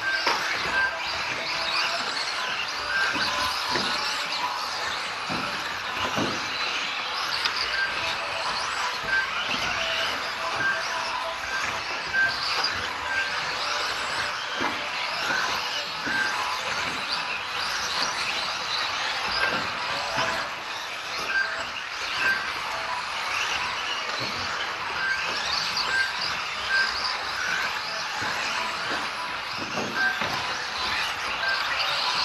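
Several electric micro RC cars racing: a steady high-pitched whine of small motors and tyres that rises and falls as they accelerate, with short high beeps recurring every second or two.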